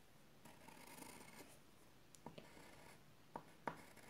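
Faint scratching of a pencil drawing a curved line on paper, with a few light clicks, the sharpest near the end.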